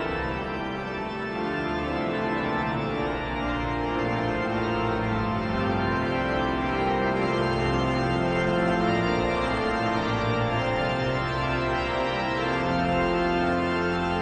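Church pipe organ playing the introduction to the closing hymn: full, held chords that move steadily from one to the next.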